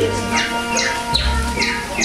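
Animatronic bird show soundtrack: quick falling whistled bird chirps, about four a second, over music with a steady low bass.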